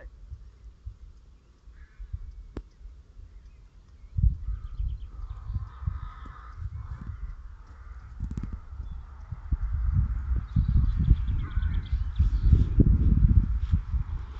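Wind buffeting the microphone in an irregular low rumble that grows stronger about four seconds in and again in the second half, with crows cawing in the background.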